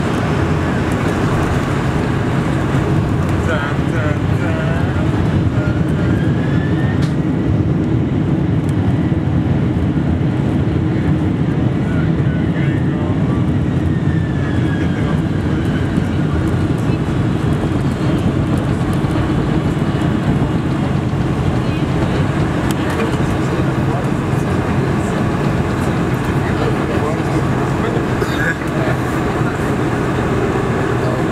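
Cabin noise of a Boeing 747-400 airliner taxiing just after landing: a steady low rumble of engines and rolling wheels, heard from inside the cabin, with faint voices over it.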